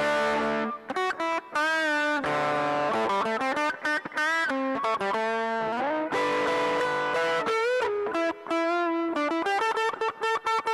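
Electric guitar played through the Zoom G1 multi-effects pedal's overdrive pedal model, in a mildly driven tone. It plays a lead line of sustained single notes with string bends and vibrato, with short gaps between phrases and choppier notes near the end.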